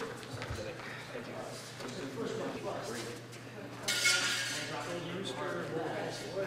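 Indistinct voices of people talking in a practice hall, with a short clinking clatter about four seconds in.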